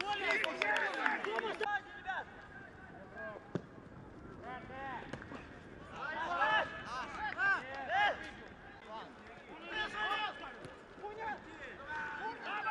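Footballers' shouts and calls ringing across an open pitch, in bursts about a second in, from about four and a half to eight seconds, and again around ten seconds. One sharp knock comes about three and a half seconds in.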